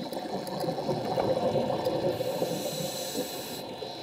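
Scuba diver's breathing through a regulator underwater: a rushing, bubbling exhaust of air. A higher hiss joins in from about halfway through and stops shortly before the end.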